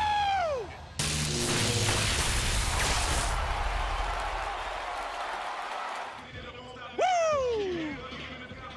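A man's shouted 'woo!' falling steeply in pitch at the start, then a loud rush of noise with music under it that fades away, and a second long 'woo!' sliding down in pitch about seven seconds in.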